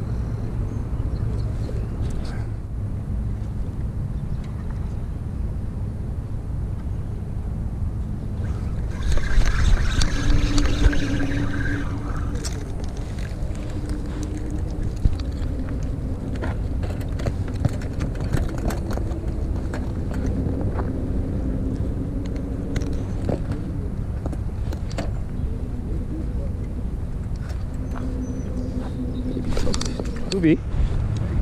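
An engine droning at a steady low pitch that wavers slightly, over a constant low rumble, with a louder stretch of noise about nine to twelve seconds in.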